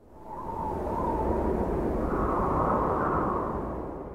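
A swelling, rushing whoosh sound effect with no clear pitch, part of an animated logo intro. It rises out of silence, is loudest just past the middle, and fades away near the end.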